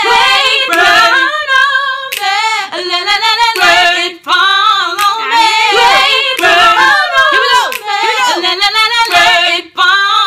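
Women singing a gospel melody, long held notes with heavy vibrato, with a few hand claps among them.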